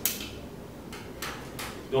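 Light plastic clicks and scrapes from a green tool-less drive bracket being unclipped from a NAS hard-drive tray: one click at the start, then three softer clicks in the second half.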